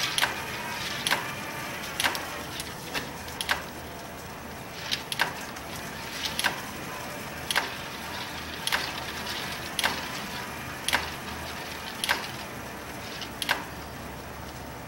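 Homemade coil winder, a plywood form turned slowly by a cordless drill, winding wire for an axial-flux generator coil: a low steady running noise with a sharp click about once a second, sometimes doubled.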